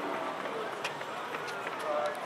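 Indistinct voices chattering while a group walks up stone steps, with footsteps and a few sharp clicks among them.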